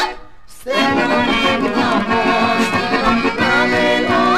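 Macedonian folk music: a brief drop in level, then a lively instrumental passage of quick, busy notes starts under a second in.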